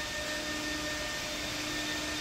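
Steady whirring hum of a running machine, with a few faint steady tones in it and no change.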